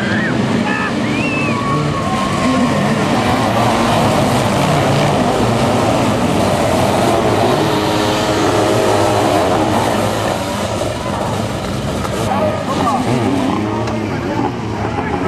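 A whole pack of sidecar motocross outfits accelerating hard off the start, many engines revving together in a dense, loud mass of sound that eases a little after about ten seconds.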